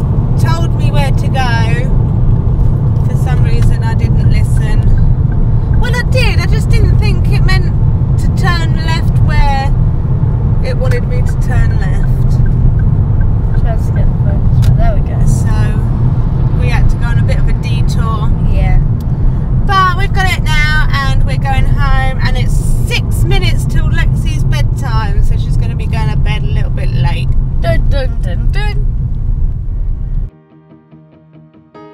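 Car cabin while driving: a steady low rumble of engine and tyres on the road, with a voice, wavering in pitch like singing, heard on and off over it. It cuts off suddenly at the end.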